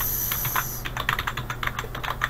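Computer keyboard keys being typed in quick, irregular keystrokes.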